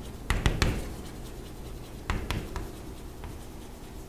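Writing sounds: a quick run of three sharp taps and scratches about a third of a second in, then three more a little after two seconds, as a pen or chalk strikes and moves across a writing surface.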